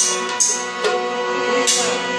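Devotional bhajan music: an electronic keyboard holds sustained chords while bright metallic jingles strike four times.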